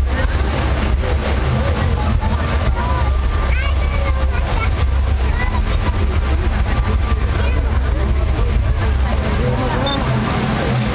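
Magic Fountain of Montjuïc's water jets rushing and splashing steadily, with a deep low rumble, under the chatter of a crowd of onlookers. No music plays with the fountain.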